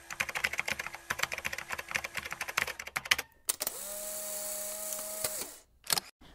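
Computer keyboard typing, a quick run of key clicks for about three seconds. Then a click and a steady hiss with a low hum, held for about two seconds, with one more click near the end.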